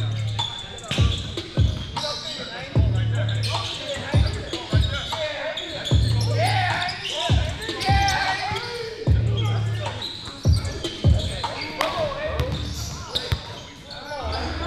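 Basketball being dribbled on a hardwood gym floor, a sharp bounce about every half second, with people's voices in the hall.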